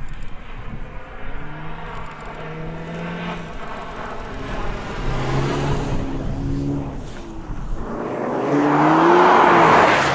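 Audi S3 Cabriolet's turbocharged 2.0-litre four-cylinder engine being driven hard on snow, its note rising and falling with the throttle and shifts. Near the end it grows loudest as the car comes close, with a rushing hiss of tyres and flung snow over the engine.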